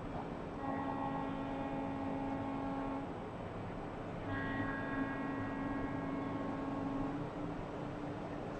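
A horn sounding two long, steady blasts of about two and a half seconds each, a second apart, over distant outdoor background noise.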